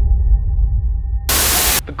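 A low steady hum with a few faint high tones. About a second and a half in, a loud half-second burst of hissing static breaks in and then cuts off sharply.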